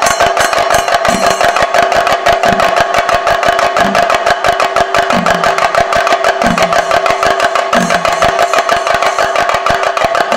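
Chenda drum ensemble beaten with sticks in a fast, dense rhythm, with a deeper stroke coming round about every second and a half. A steady held tone sounds under the drumming.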